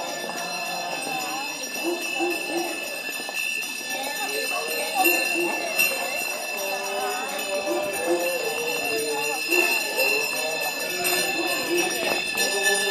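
Small bells jingling and ringing without a break, the altar servers' handbells carried in a Corpus Christi procession, with the voices of the walking crowd underneath.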